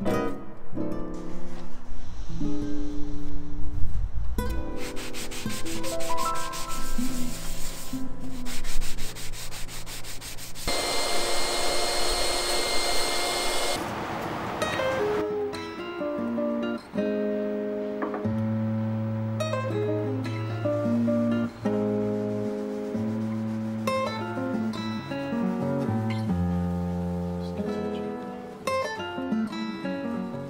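A power sander with a hook-and-loop disc works over a wooden board, a rough rubbing noise with a motor whine that is loudest in a stretch of a few seconds near the middle. Background guitar music plays throughout.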